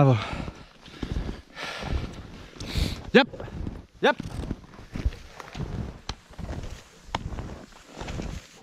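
Rhythmic crunching strides through deep powder snow, a little under two a second.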